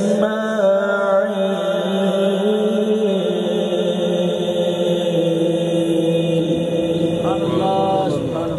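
A man's solo Quran recitation (tilawat) in the melodic tajweed style, drawing out one long, held phrase. It has wavering ornamental turns near the start, a step down in pitch about three seconds in, and more ornamented bends near the end.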